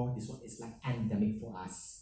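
Speech only: a man's voice speaking, with short pauses.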